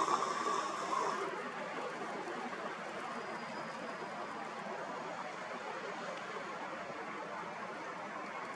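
Steady, even outdoor background hiss with no clear single source. A steady tone dies away about a second in.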